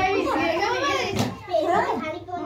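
Lively, high-pitched voices talking in a small room, more than one at once.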